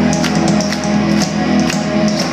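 Live rock band playing: electric guitars and bass over a drum beat with sharp hits about twice a second.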